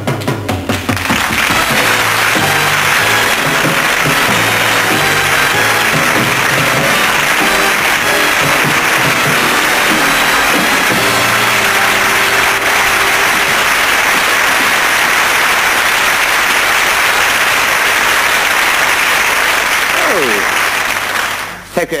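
Studio audience applauding steadily over a band playing, the applause dying away near the end.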